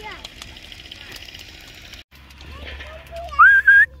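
A person whistling to call a dog: two short, loud whistles near the end, the first rising in pitch and the second held high.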